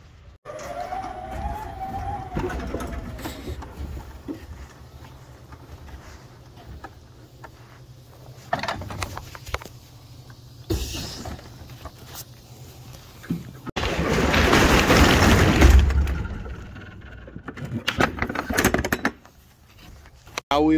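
Electric pallet jack at work on a trailer's steel floor. Its drive motor whines up and back down, then wheels and load knock and clatter over the diamond plate, with a loud rolling rush about two thirds of the way through as it crosses toward the trailer door.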